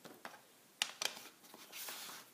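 A few light clicks and taps as a wooden-block rubber stamp and a plastic ink pad are put down and handled on a self-healing cutting mat, with a brief scuffing slide near the end.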